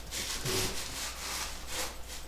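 Several unpitched rubbing, brushing strokes from handling an acoustic guitar, with a hand and sleeve moving over the body and strings, no notes sounding.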